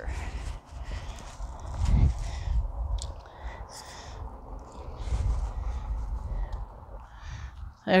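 Outdoor background noise, mostly a low rumble that rises and falls, loudest about two seconds in, with a few faint clicks.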